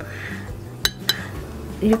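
A paintbrush clinking against a porcelain watercolor palette: two sharp clinks about a quarter-second apart, a little under a second in.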